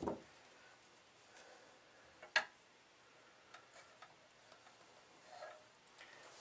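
Quiet handling of a tennis racket being laid onto a wooden balance jig resting on digital scales: one sharp click a little over two seconds in, with a few faint ticks and light knocks around it.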